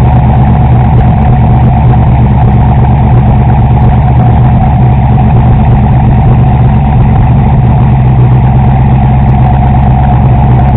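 Factory Five Racing GTM's Katech-tuned GM V8 idling steadily and loudly, with no revving.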